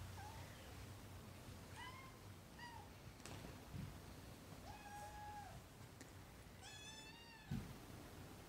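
Cats meowing quietly: two short meows about two seconds in, a longer one about five seconds in, and a drawn-out, louder meow near the end, followed by a brief soft thump.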